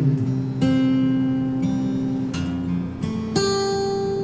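Acoustic guitar in a country song recording, three chords strummed and left to ring between sung lines.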